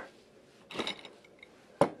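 Metal hardware handled on a wooden workbench: a short clinking clatter about a second in, then a single sharp knock near the end as a steel pulley block is set against the wooden beam.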